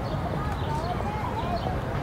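City street ambience: a steady low rumble of traffic with the distant voices of passers-by.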